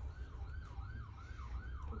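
An emergency vehicle's siren in a fast yelp, its pitch sweeping up and down about three times a second, over a steady low rumble.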